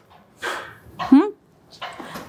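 A brief voiced 'hm'-like syllable, rising then falling in pitch about a second in, between soft breathy sounds: a short wordless vocal response between sentences.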